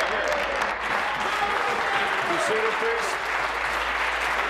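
Members of a legislature applauding, with several voices calling out 'hear, hear' over the clapping.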